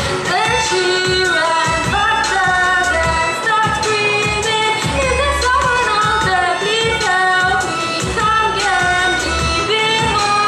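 A young female voice singing a gliding Indian melody with a violin playing alongside. A low, regular beat runs underneath.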